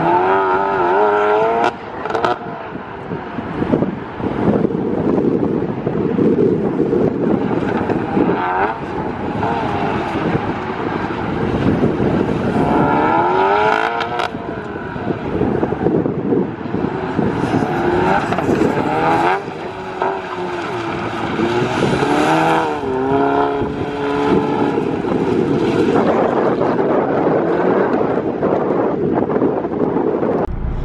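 Stage 3+ tuned Volkswagen MK7 Golf R's turbocharged 2.0-litre four-cylinder on an autocross run, revving hard and lifting off over and over, its note repeatedly rising and falling.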